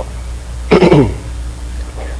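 A man clearing his throat once, briefly, a little under a second in, over a steady low hum.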